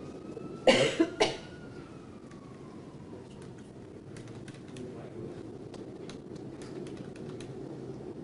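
A person coughing: three quick coughs about a second in, then scattered faint clicks.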